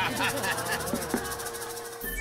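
People chuckling and laughing lightly, over a fast, even rattling tick and a held tone.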